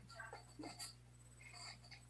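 Near silence: room tone with a low steady hum and a few faint, brief indistinct sounds.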